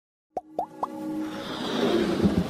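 Animated logo intro sting: three quick cartoon-like plops about a quarter second apart, each a short upward glide in pitch, then a swelling build of music.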